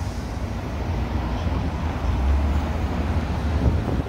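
Road traffic passing on a multi-lane city street: a steady low rumble of car engines and tyres that swells somewhat in the middle.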